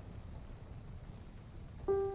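A low, steady rushing noise, then a single piano note begins just before the end.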